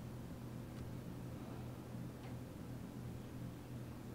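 Quiet steady low hum of the room, with two faint light ticks from a gem pen picking small rhinestones out of a tray.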